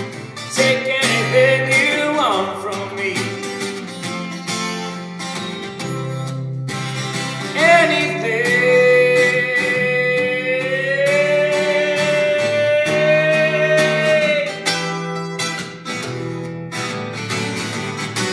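Twelve-string acoustic guitar picked and strummed, with a man singing over it; about halfway through he holds one long note for several seconds.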